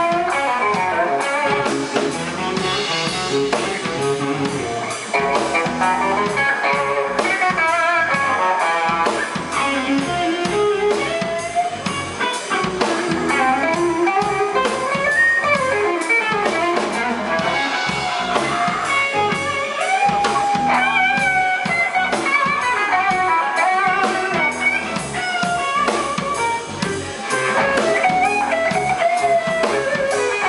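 Live blues-rock band: lead electric guitar playing bending, sliding melodic lines over a second guitar and a drum kit.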